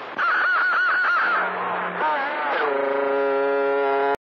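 A sound effect from a CB noise box, heard over the radio: a loud warbling yell-like wail that wobbles rapidly up and down in pitch, then a glide into a steady held, buzzy tone.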